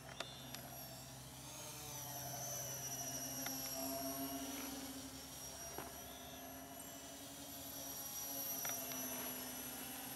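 Distant buzz of a small RC foam plane's electric motor spinning quadcopter propellers. Its pitch drifts and it swells louder twice as the plane flies around overhead, with a few faint clicks.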